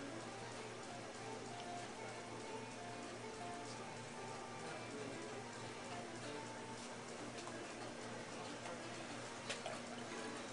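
Electric potter's wheel running with a steady low hum while wet hands work the spinning clay wall, with faint wet, dripping sounds of slurry. There is a single sharp click near the end.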